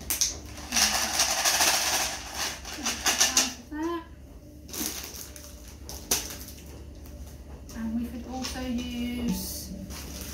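A homemade sensory shaker, a plastic bottle filled with dry grains, shaken so the grains rattle loudly against the plastic for about a second and a half, then in a few short shakes about three seconds in.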